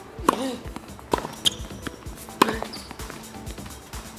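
Tennis ball struck by a racket on a serve just after the start, then two more sharp racket hits or bounces about a second and two and a half seconds in, over background music.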